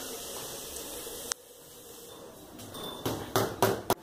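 Hammer tapping small nails into the thin hardboard back panel of a chest of drawers. There is a single sharp click about a second in, then about six quick taps in the last second or so, getting louder.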